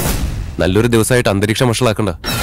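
A sudden loud boom-like hit in the first half-second, a dramatic sound effect on the serial's soundtrack, followed by a person speaking.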